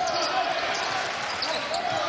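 A basketball being dribbled on a hardwood court, over continuous arena background noise.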